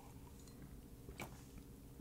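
Near silence with faint mouth sounds of someone sipping water from a glass, and one soft click just over a second in.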